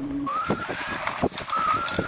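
Electric bike motor whining as the fat-tyre e-bike pulls away on a dirt track, its pitch rising slightly then holding. Under it run a rushing of wind and tyre noise and scattered knocks from the bike over the rough path.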